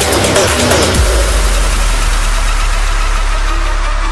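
Electronic dance music in a beatless breakdown. Descending synth glides give way, about a second in, to a sustained noise wash over a deep bass drone, whose top end slowly dulls near the end.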